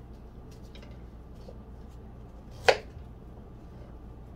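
A single sharp knife chop through fruit onto a wooden cutting board a little under three seconds in, with a few faint knife taps before it over a steady low hum.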